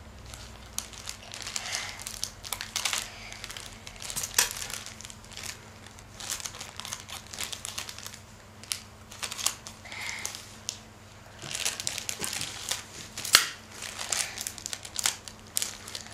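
Thin plastic balloon bag crinkling and crackling in irregular bursts as it is cut with scissors and pulled open, with one sharper crackle about 13 seconds in.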